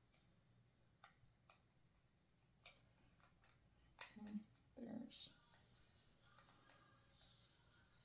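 Faint, scattered plastic clicks and taps from handling a pair of wireless earbuds and their charging case. A short murmur of a voice comes about four to five seconds in.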